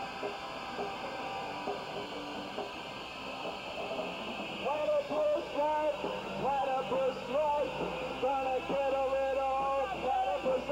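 Lo-fi tape recording of a live punk band, with electric guitar and bass playing. About halfway in, a voice comes in singing short, bending phrases high over the band, and the sound gets louder.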